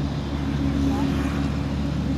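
A steady, low engine hum that holds one constant pitch throughout.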